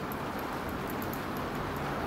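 Steady low background hiss with no distinct events: the room tone of the recording during a pause in speech.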